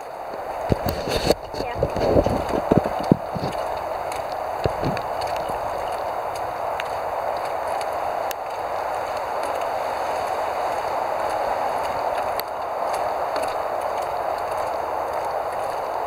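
Footsteps on a wooden boardwalk, a run of irregular low thuds in the first few seconds, over a steady hiss.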